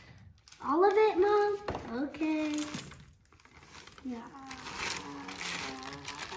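A child's voice in two short wordless bursts, then the crinkling of a thin plastic cake-mix bag as the powder mix is shaken out of it into a steel bowl.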